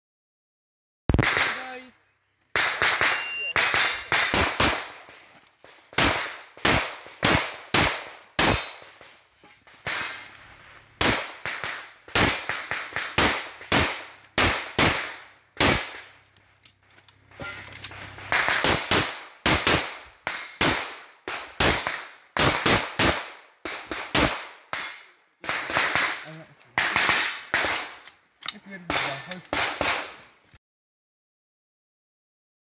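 Semi-automatic pistol fired in a run of quick pairs and short strings, starting about a second in and carrying on to the end, with brief pauses between groups of shots.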